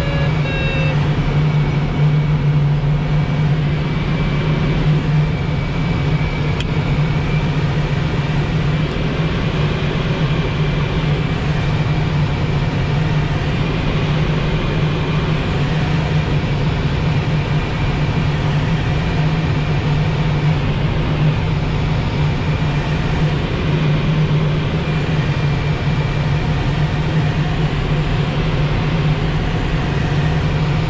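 Steady rush of airflow around an LET L-13 Blaník glider in unpowered flight, with a constant low hum through it.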